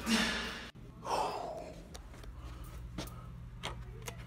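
Background music cuts off abruptly, followed by a short breathy gasp. Then a steady low hum and a few light clicks as a hotel keycard door lock is opened.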